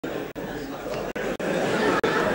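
Indistinct voices talking in a large hall, with a few brief dropouts in the sound.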